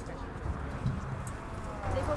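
Faint, distant voices of players and spectators over a low background rumble, with a couple of dull thumps about half a second and one second in.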